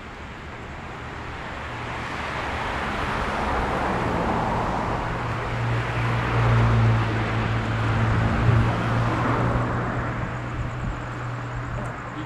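A motor vehicle passing on the road. Engine hum and road noise swell over several seconds, are loudest about six to nine seconds in, then fade away.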